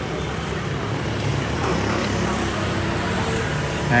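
Honda SH Mode 125 scooter's single-cylinder engine idling steadily.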